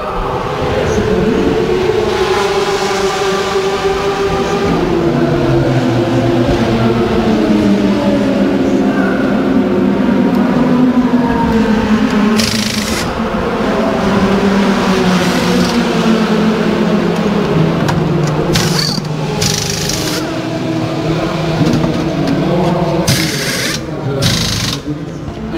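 Pit-lane racket of a race-car pit stop: race engines running with a slowly wavering pitch, and short hissing bursts of pneumatic wheel guns during the tyre change, several of them in the second half.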